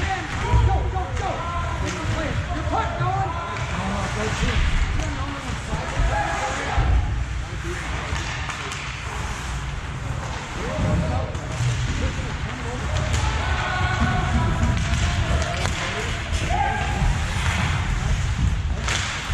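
Chatter of several voices echoing in an ice hockey arena, over a steady low rumble.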